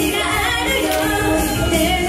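A woman singing a J-pop idol song live over pop backing music.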